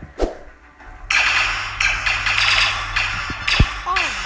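Sci-fi blaster battle sound effects: a sharp shot with a thud just after the start, then from about a second in a dense, continuous stretch of rapid blaster fire over a low rumble, with another sharp thud near the end.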